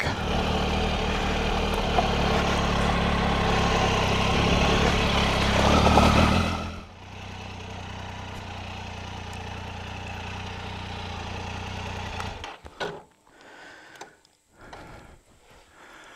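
Triumph Tiger 800XCx motorcycle's three-cylinder engine running while riding slowly, with wind noise. About seven seconds in the sound drops to a quieter idle as the bike stops. The engine is switched off about twelve and a half seconds in, leaving a few scuffs and knocks.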